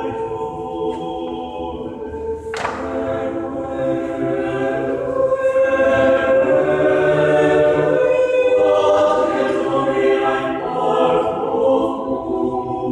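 Mixed choir singing a cappella, holding sustained chords in several parts and swelling louder about five seconds in. A single sharp click sounds about two and a half seconds in.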